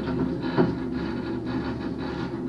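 Steady running noise inside a cable car cabin travelling along its ropeway, a low rumble and hum with a brief sharper knock about half a second in.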